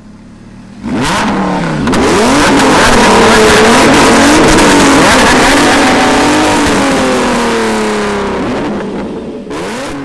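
Lamborghini Huracán's V10 engine running loud with shifting revs, coming in suddenly about a second in, holding high for a few seconds and then slowly easing off, with a fresh burst near the end.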